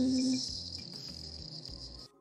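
A high, steady cricket-like trill in the background soundtrack cuts off abruptly at the end. A held low musical note underneath fades out about half a second in.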